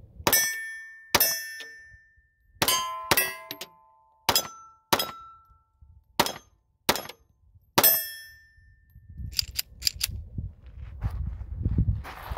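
Colt 1903 Pocket Hammerless pistol firing .32 ACP, a string of about nine shots spaced roughly half a second to a second and a half apart. Several hits make steel targets ring briefly. A few lighter clicks follow.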